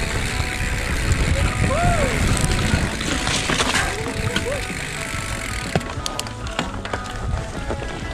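Mountain bike descending a rough dirt trail: wind buffeting the handlebar camera's microphone and the bike rattling over bumps, with sharp knocks from about six seconds in. A brief shout about two seconds in, and background music underneath.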